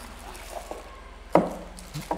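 Cardboard box and a bagged handheld meter being handled on a wooden table: light handling noise with a small tick, then one sharp knock a little past halfway.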